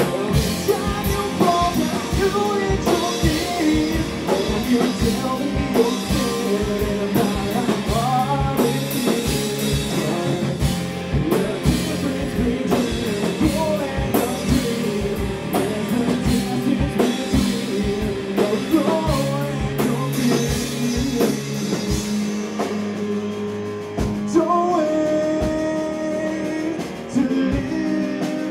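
Live rock band playing: a male voice singing over electric guitar, bass guitar and a drum kit. The drums drop out for a couple of seconds about three quarters of the way through, then come back in.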